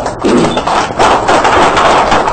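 A group of people clapping, a dense patter of claps that builds up within the first second.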